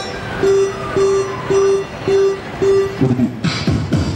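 Beatboxing through a handheld microphone: a pitched note repeated about twice a second, then about three seconds in, fast kick-drum and snare sounds come in.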